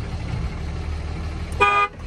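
Diesel engine idling steadily, heard from inside the cab; about one and a half seconds in, the dashboard warning chime beeps once. The chime sounds with the door open while the shifter is not fully in park, which the owner puts down to a transmission or torque-converter problem.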